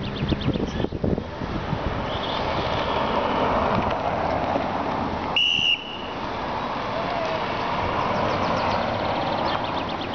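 A single sharp whistle blast, just over half a second long, about halfway through, most likely a road marshal's whistle warning of the approaching race. Under it is a steady wash of road noise from a car driving up.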